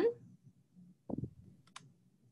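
Faint clicking in a pause between speech: a short, dull knock about a second in and a sharp little tick just after it.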